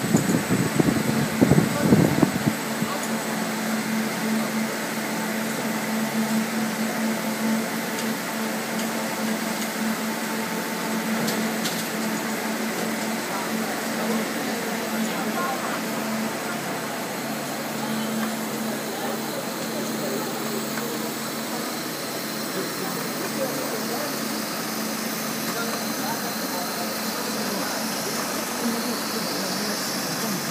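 Steady hum of a rubber hose extrusion line running: the cooling trough's rows of small electric fans and the extruder drive, with a steady low drone. A louder rough rumble comes in the first couple of seconds.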